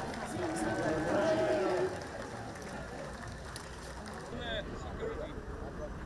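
Indistinct voices of onlookers talking outdoors, clearer for the first two seconds, then a quieter murmur of scattered voices.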